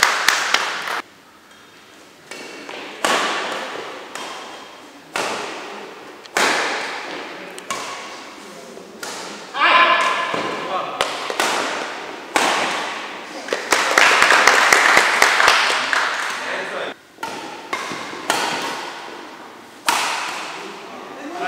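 Badminton being played in an echoing indoor hall: sharp clicks of rackets striking the shuttlecock, over the voices of players and onlookers, with a raised voice about ten seconds in. The sound changes abruptly several times.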